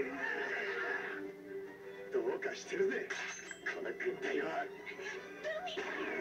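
Anime episode audio playing through the speakers: background music with a long held note, and brief shouted character voices in the middle and near the end.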